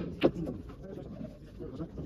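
A single sharp click of snooker balls striking about a quarter of a second in, over low background voices talking.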